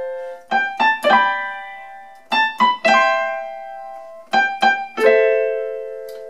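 Casio electronic keyboard on its piano voice playing chords, each rolled quickly from the bottom note up and left to ring and fade. There are three such figures about two seconds apart, and a held chord near the end.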